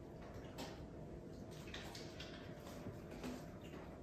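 Faint eating sounds: a man chewing chicken wings held in his hands, with a few soft smacks and clicks scattered through.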